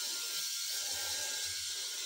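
VeroShave 2.0 electric head shaver running steadily as it cuts dry stubble on the back of the head, with no foam or gel.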